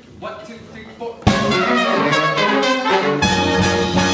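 A quiet voice first, then a high school jazz big band comes in together about a second in with a sudden, loud full-ensemble chord of trumpets, trombones and saxophones. The bass and low end join more heavily about two seconds later.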